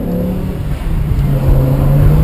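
BMW M6's naturally aspirated V10 engine heard from inside the cabin while driving; its note dips just under a second in, then climbs steadily as the car pulls.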